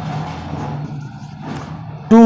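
Faint scratching of a marker writing on a whiteboard over a steady low hum.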